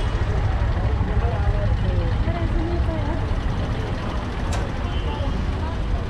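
Road traffic with a steady low rumble, and faint voices of people around. There is a single short tick about halfway through.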